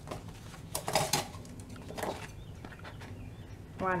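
Paper planner pages and sticker sheets handled on a desk: a few light clicks and rustles about a second in and again around two seconds.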